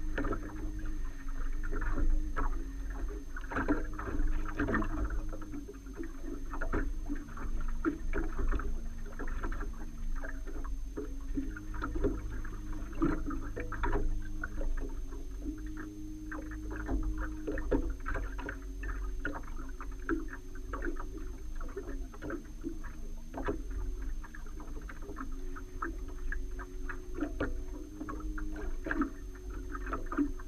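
Small boat on the water: water slapping and knocking against the hull, with wind rumble on the microphone and a steady low motor hum that steps up and down in pitch every few seconds.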